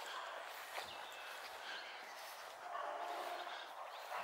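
Quiet outdoor background hiss in an open meadow, with a few faint, short high-pitched chirps.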